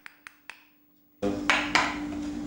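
Stone-carving chisel tapped lightly into white stone: three quick, faint taps about a quarter second apart. After a short pause, two louder, sharp clicks of a carving tool on stone come close together near the end.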